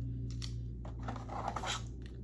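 Plastic clipper guide combs being handled: a few light clicks and a scratchy rustle, over a steady low hum.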